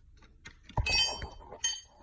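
A dull thump, then two sharp metallic clinks with a brief ringing, a steel wrench knocking against the diesel engine's rocker arms and valve gear.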